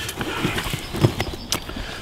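Dead cod being handled on grass with gloved hands: a series of irregular soft knocks and rustles as the wet fish and their stringer cord are moved about.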